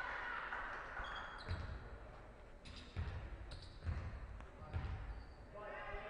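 A basketball bounced on a hardwood gym floor: about four dull thuds roughly a second apart, the shooter's dribbles before a free throw. A few short high squeaks come in between, and a voice calls out near the end.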